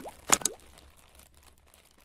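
Animated logo-intro sound effects: two sharp pops with quick pitch glides in the first half second, then a faint tail that fades away.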